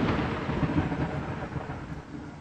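A rumbling wash of noise fading steadily away after a loud hit, the dying tail of the soundtrack's final sound, thunder-like in character.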